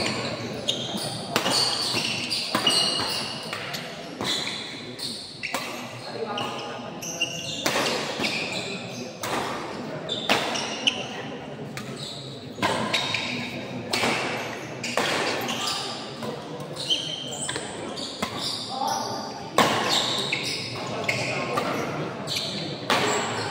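Badminton doubles rally in a large hall: repeated sharp racket strikes on the shuttlecock and short high squeaks of shoes on the court floor, over steady crowd voices.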